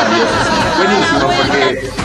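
Only speech: people talking, with more than one voice.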